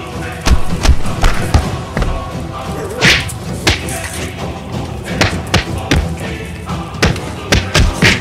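Fight sound effects, a dozen or so sharp punch-and-thud hits at irregular intervals, laid over background music.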